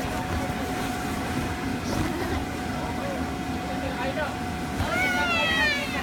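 An inflatable bounce house's electric blower running with a steady hum, under children's voices as they bounce. Near the end a child lets out a high squeal, about a second long, that falls in pitch.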